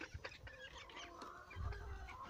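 Young ducks calling softly: scattered short quacks and peeps from several birds, with a low rumble near the end.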